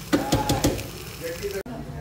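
Several quick knocks of a utensil against the frying pan of bacon in the first second, then the sound cuts off suddenly.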